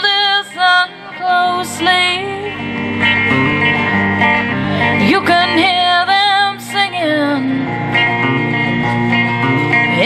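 A woman singing with a semi-hollow electric guitar accompanying her. The guitar comes in fuller about one and a half seconds in and carries on under the voice.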